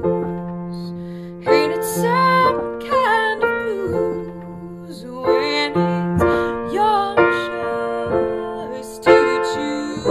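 Piano playing a song, new chords struck every second or so, with a woman's voice singing a sliding melody over it.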